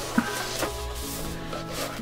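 Soft background music over the rubbing and scraping of a keyboard being lifted out of its foam-lined box, with a soft knock near the start.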